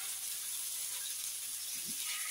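Hot oil sizzling steadily in a frying pan as masala-coated pieces shallow-fry.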